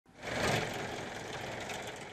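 A steady mechanical noise, like a motor running, which swells up over the first half second and then holds steady.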